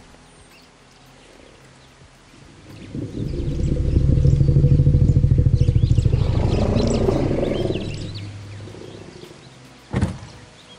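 An African savannah elephant's low rumbling call. It swells in about three seconds in, stays loud for several seconds and fades out by about eight seconds. It is the elephant calling back in answer to a played-back call containing her name. A brief sharp knock comes at the very end.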